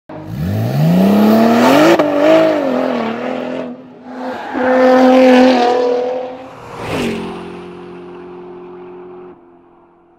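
Car engine revving sound effect: the pitch climbs over the first second or so and holds, then a second rev around the middle. A sharp hit follows, then a steady fading hum that cuts off shortly before the end.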